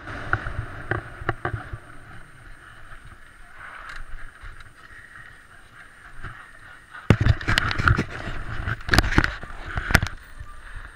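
Mountain bike tyres rolling over loose gravel, with clicks and rattles from the bike. From about seven seconds in come louder knocks and rumbling on the microphone as the bike comes to a stop.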